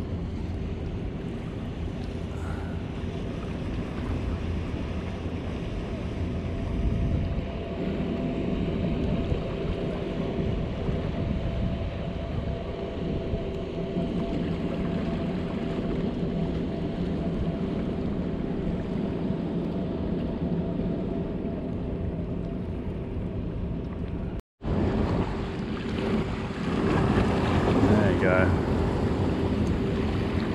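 Steady drone of a distant motorboat engine over wind on the microphone and water lapping on harbour rocks. A short dropout to silence comes about three-quarters through. After it, water splashes more loudly against the rocks.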